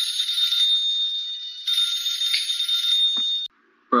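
A steady, high-pitched ringing tone with a hiss around it, like an electronic bell or alarm, cutting off suddenly about three and a half seconds in.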